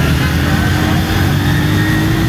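A vehicle engine running close by, its pitch rising slowly over a steady low rumble.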